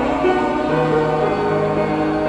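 Church singing: a group of voices sings the responsorial psalm in slow, held notes that step from one pitch to the next.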